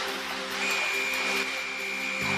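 A trainer's whistle blown once as a long, steady high-pitched blast starting about half a second in, the signal for the orca Shamu to bring its rider to the side of the pool. Under it a music bed holds low notes.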